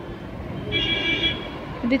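A short, steady, high-pitched toot or beep lasting about half a second, heard about three-quarters of a second in.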